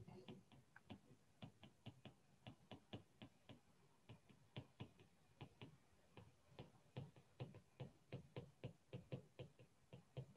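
Faint, irregular clicks of a stylus tapping on a tablet screen as block capital letters are handwritten, coming more quickly in the last few seconds.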